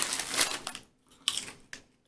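Foil potato chip bag crinkling as a hand works at its opening: a stretch of rustling, then a pause and a couple of short crinkles.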